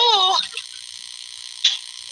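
A man's voice trailing off in the first half-second, then a steady faint hiss of microphone noise through a video call, with one short click near the end.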